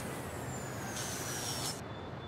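Audience applause in a hall, a dense wash of clapping that begins to die away near the end.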